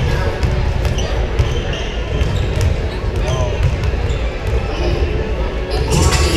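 Several basketballs being dribbled and bouncing on a hardwood gym floor, over the chatter of a crowd in the stands.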